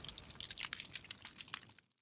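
Faint crackling sparks, a fire sound effect: a scatter of small sharp crackles that thins out and fades away near the end.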